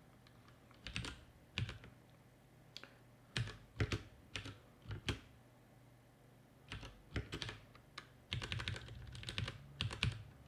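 Typing on a computer keyboard: irregular keystrokes in short runs, with brief pauses between them.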